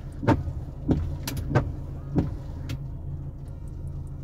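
Car engine running with a steady low hum, heard from inside the cabin. Over it come a few scattered sharp taps of raindrops hitting the glass and body in light rain.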